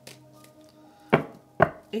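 Two sharp taps about half a second apart from a deck of tarot cards being handled, the cards struck or snapped against each other or the table.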